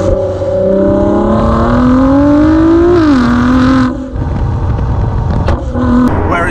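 The 2017 Ford GT's twin-turbo V6 accelerating hard. Its note climbs steadily for about two seconds, drops sharply about three seconds in and holds, then falls away about four seconds in as the throttle eases.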